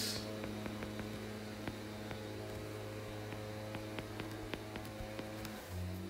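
Steady electrical mains hum with light, irregular ticks of a stylus tapping and writing on a tablet's glass screen.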